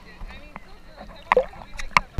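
Sea water sloshing and lapping close around a camera held at the water's surface, with a couple of short, sharp splashes in the second half.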